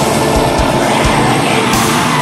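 Atmospheric black metal: a dense wall of distorted guitars. The rapid kick-drum barrage drops out here, leaving only a few single kick hits under the guitars.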